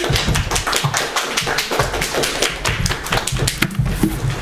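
Small audience applauding, the individual claps distinct and irregular.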